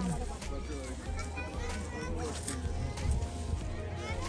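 Children's voices and chatter from a busy playground, many overlapping shouts and calls with no single speaker standing out.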